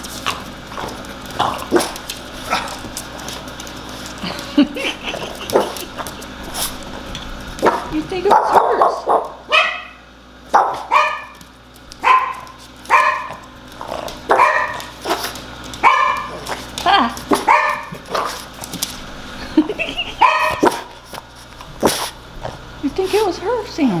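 Boston Terrier barking in a run of about a dozen short barks, roughly one a second, starting about a third of the way in: begging barks aimed at a person holding food.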